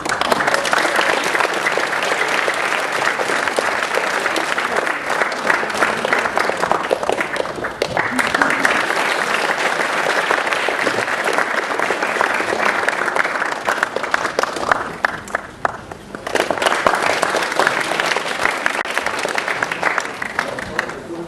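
Audience applauding, many hands clapping at once; it starts suddenly, dips briefly near the end and then swells again.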